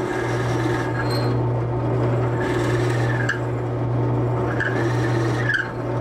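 Drill press running at a slow speed, about 500 RPM, with a steady motor hum under the rasping of a drill bit cutting into a wooden pen blank. The bit is pulsed into the wood to keep the heat down, so the cutting sound eases and picks up a few times.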